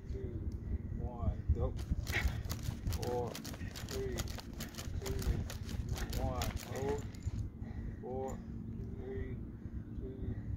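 Quick footsteps scuffing and striking dry grass and dirt as a sprinter drives out against an elastic speed-harness band, a rapid run of sharp steps from about two to seven seconds in.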